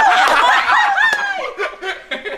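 High-pitched laughter from several people, loud for the first second and a half and then fading, in response to a joke.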